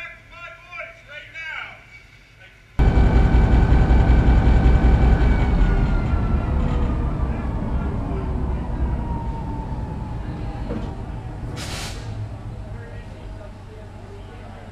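Diesel locomotive engine heard from inside its cab, very loud and then winding down as it is powered down: the sound fades steadily while a whine falls in pitch. A short hiss near the end.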